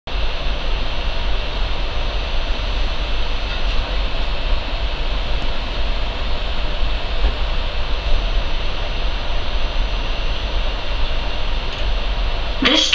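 Steady interior noise of a Class 334 electric multiple unit: a continuous low rumble with a haze of hiss and faint steady high-pitched tones.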